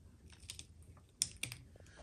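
Faint, scattered clicks and taps of plastic wiring-harness connectors being handled on the back of a plastic headlight housing, with a few sharper clicks a little past the middle.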